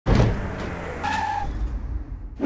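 Sound effect of a van skidding to a stop: a sudden loud start, then a steady rough tire-skid noise over a low engine rumble, with a short squeal about a second in.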